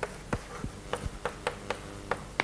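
Chalk tapping and scratching on a blackboard as words are written, a quick run of sharp taps about four a second.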